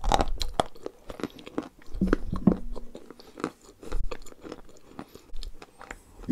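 A mouthful of wet white chalk-clay paste being chewed close to the microphone, with many sharp, irregular crunches and clicks.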